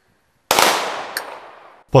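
A ceremonial salute volley of gunfire: one loud crack about half a second in, its echo dying away over about a second and a half, with a faint extra report in the tail, then cut off suddenly.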